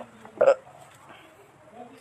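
A person's single short vocal sound about half a second in.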